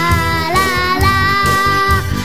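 A young girl singing long sustained notes of an ethno folk song, her pitch stepping up about half a second in and again about a second in, over instrumental backing with a steady beat.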